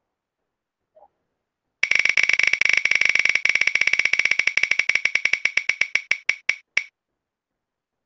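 Spinning prize-wheel sound effect: a fast run of ticks as the pointer strikes the pegs. The ticks slow steadily over about five seconds until the wheel comes to rest.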